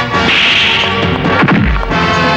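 Dubbed fight-scene sound effects: a swish through the air, then a heavy punch thud near the end, over a music score.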